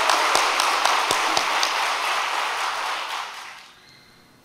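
Audience applause, a dense patter of many hands clapping, dying away about three and a half seconds in.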